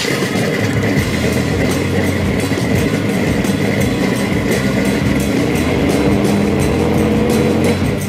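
A vehicle engine whose pitch rises steadily for several seconds, as if accelerating, then cuts off shortly before the end, with music underneath.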